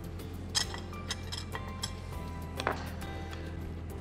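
A spoon clinking a few times against a dish while chicken stock cubes are stirred into a little cold milk, over steady background music.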